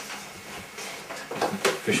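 A short pause in a conversation, with low room noise, then a man's voice starts speaking near the end.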